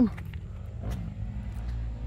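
An engine running steadily in the background, a low even hum, with a couple of faint clicks about a second in.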